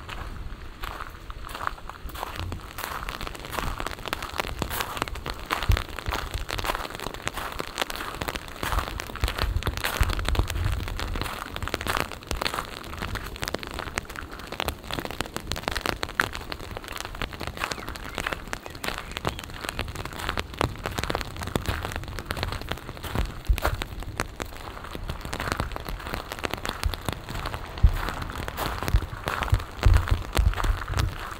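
Light rain pattering, a dense irregular crackle of drops, with occasional low rumbles.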